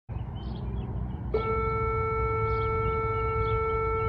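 A low rumble of room noise, joined about a second in by a steady, unwavering pitched tone with overtones, like a held horn or electronic tone; both cut off suddenly at the end.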